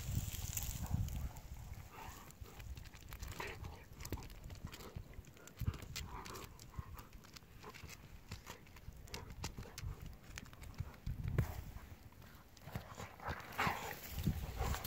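Two golden retrievers play-wrestling: scattered scuffs and clicks of their paws on a gravel road, with a few short dog sounds in between.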